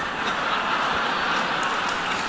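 Audience applause in a large hall: a steady wash of many hands clapping that swells in and keeps going evenly.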